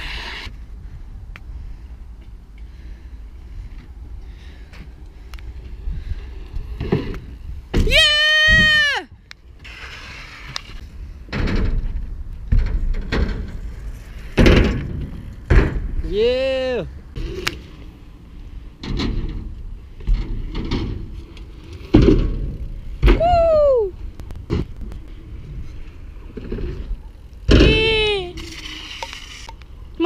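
BMX bike riding on skate-park ramps and concrete, with scattered sharp knocks and clatters from the wheels and landings under steady wind on the microphone. A voice gives several drawn-out high-pitched shouts that rise and fall in pitch: a long, loud one about eight seconds in, and shorter ones around 16, 23 and 28 seconds.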